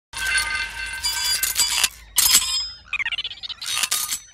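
Bright chiming and jingling sound effects in several bursts, with ringing tones and a short falling glide a little before the end.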